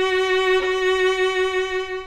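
Violin bowing one long held note, stopped on the string with the fingertip rather than the pad of the finger, which gives a less resonant, less round tone than the pad does.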